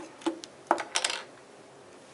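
A few sharp knocks and clicks as a large telephoto lens is handled and set upright on a wooden bench, with a small hard part clattering down; the loudest knocks come just under and around a second in.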